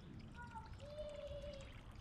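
Faint trickle of water pouring from a solar pond pump's return hose into a small pond. A few brief, faint tones sound over it in the middle.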